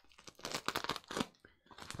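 Plastic bubble wrap crackling and crinkling as it is cut open with a box-cutter knife: a dense run of small crackles for about a second, then another brief burst near the end.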